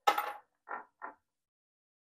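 A sharp metallic clink with a brief ring, as a small metal fly-tying tool is set down on the bench, then two soft handling sounds about a second in.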